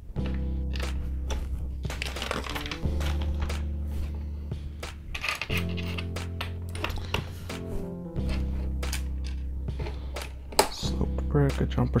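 Background music with sustained low chords that change about every three seconds, with scattered clicks and taps of LEGO bricks being handled and pressed together.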